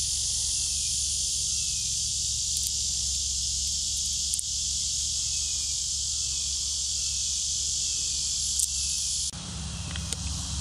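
A steady, high-pitched outdoor insect chorus, with a few faint clicks. It cuts off suddenly near the end, giving way to a quieter hiss over a low rumble.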